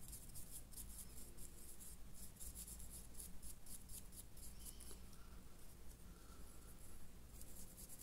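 A stiff dry brush scrubbing quickly back and forth over textured model stonework, giving a faint rapid scratching that eases off for a while after the middle and picks up again near the end. A low steady hum runs underneath.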